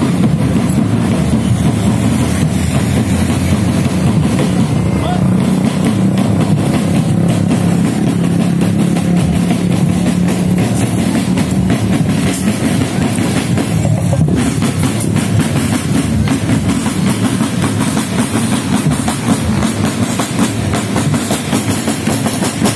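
Marching drum band playing: bass drums and snare drums beaten in a continuous rhythm of many strokes, loud throughout.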